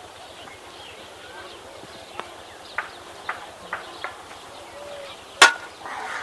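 Five sharp knocks spaced about half a second apart, then one much louder crack near the end, over a faint outdoor background.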